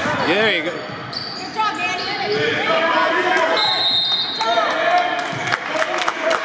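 Basketball dribbled on a gym floor amid shouting voices in a large hall, with a short steady referee's whistle about three and a half seconds in that stops play.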